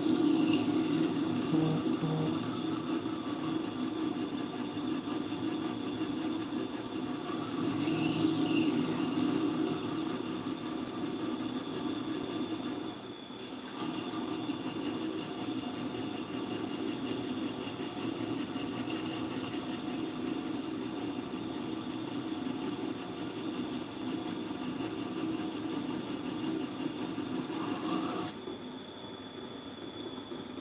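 Tormek T-4 wet grinder running, with a knife held in a KJ-45 jig being ground against its turning wheel: a steady rasping grind over the machine's hum as the edge is worked down until a burr forms. Near the end the grinding noise stops and only the machine's hum continues.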